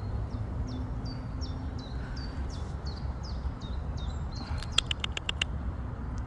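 A songbird singing: a run of about a dozen short, high notes, each sliding down into a brief held tone, repeated evenly about three times a second, followed about five seconds in by a quick run of sharp ticks.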